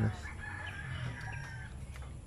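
A rooster crowing: one long crow lasting about a second and a half.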